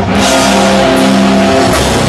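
Grindcore band playing live and loud: heavily distorted guitar and bass holding chords over drums and cymbal crashes, kicking back in hard right at the start after a brief dip.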